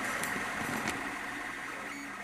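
A machine running steadily: a noisy hum with a faint high whine, and a couple of light clicks early on.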